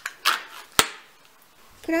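Plastic lid of a cream cheese tub being pried off: a brief rustling scrape, then one sharp snapping click just under a second in.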